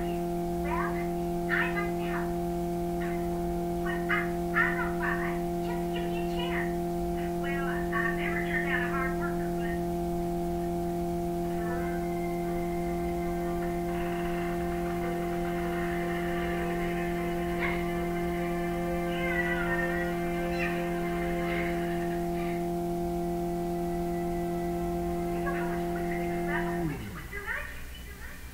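Cartoon soundtrack playing from a television's speakers in a small room: character voices and background music over a steady low drone, which slides down in pitch and cuts off about a second before the end.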